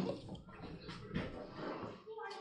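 Faint rustling and a few light knocks of a child climbing onto a car's back seat. It opens on the fading end of a loud thump that struck just before.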